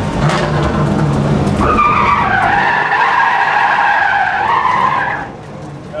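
A Pontiac GTO drift car's V8 running with a steady low note, then tyres squealing loudly for about three and a half seconds, the squeal wavering in pitch before it cuts off suddenly.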